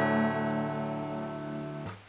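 Acoustic guitar's final strummed chord ringing out and slowly fading, then cut off suddenly near the end.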